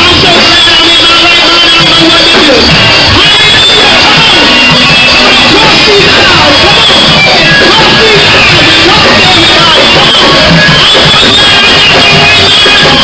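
Loud live church praise band music, with guitar, and voices over it.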